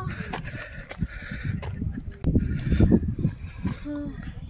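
Wind buffeting the microphone in gusts on an exposed hilltop, swelling from a little past halfway, over a steady higher hiss. A short pitched call sounds right at the start and a brief low tone near the end.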